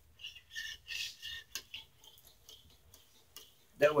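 A metal stirring rod scraping against the inside of a small metal pot of melted lure plastic. It makes several short, high-pitched scrapes in the first two seconds, followed by a few light ticks.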